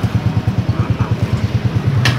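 Motorcycle engine idling with a steady, even exhaust beat.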